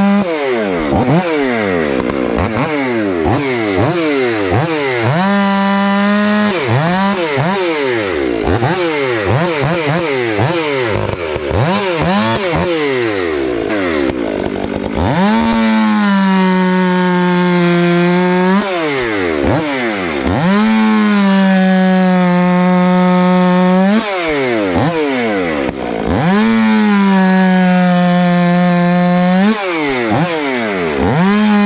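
STIHL MS 500i fuel-injected two-stroke chainsaw cutting into a red oak log. For the first half the engine pitch swoops up and down over and over. Then it holds steady in the cut for stretches of two to three seconds, dipping briefly between them.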